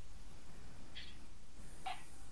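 A pause in the talk: the recording's steady low hum and faint hiss, with two faint short sounds, one about a second in and one near the end.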